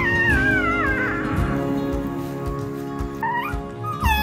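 Newborn American Bully puppies crying with high, wavering squeals that slide downward through the first second, then one short rising squeal near the end. Background music with sustained tones plays underneath.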